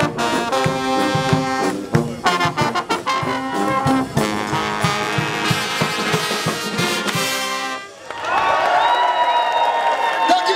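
Dutch street brass band (dweilorkest) of trombones, euphoniums, trumpet and sousaphone playing loudly over a drum beat. The band holds a long final chord that cuts off about eight seconds in, followed by voices shouting and cheering.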